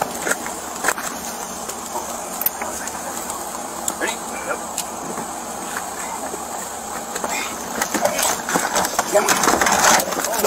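Body-camera audio of indistinct voices over a running vehicle engine, with scattered clicks and knocks; it grows louder and busier near the end.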